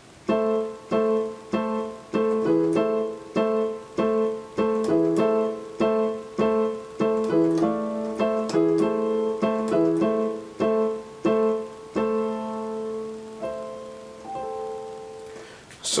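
Yamaha digital piano on a piano voice, playing short repeated chords about every 0.6 s, alternating A minor and E major over an A in the bass. Near the end the chords are held longer, and the last one rings out.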